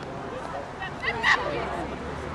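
Distant voices of players and spectators around a soccer field, with one short, loud call just over a second in.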